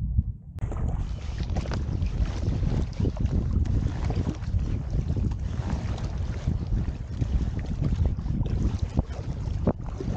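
Wind buffeting the microphone, with water splashing and lapping as a double-bladed paddle strokes beside an inflatable packraft.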